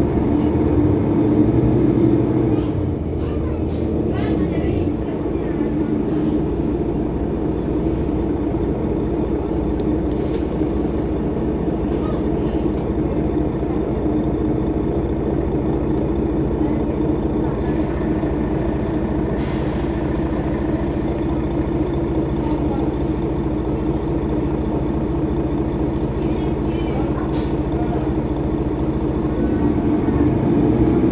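Mercedes-Benz Citaro facelift city bus engine running steadily, with short pneumatic air hisses about ten seconds in and again around twenty seconds.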